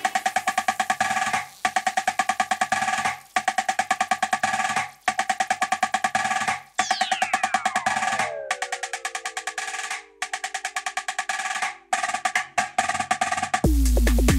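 Dance music from a DJ mix in a build-up: a fast snare-drum roll repeats in phrases broken by short gaps. A falling pitch sweep glides down from about halfway, and heavy bass comes in right at the end.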